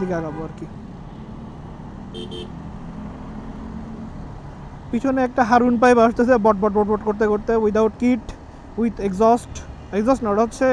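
Steady low hum of a motorcycle riding in city traffic, with a short vehicle-horn toot about two seconds in. From about halfway a voice talks over it.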